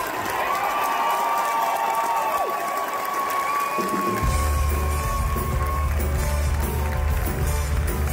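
Theatre audience cheering and applauding under a long held high note. About four seconds in, a live rock band kicks in with a heavy drum and bass beat.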